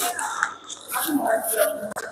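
Indistinct voices of people talking in a room, with a few small clicks and knocks of handling.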